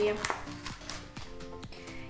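Soft background music with held notes, under a few faint clicks; a voice trails off at the very start.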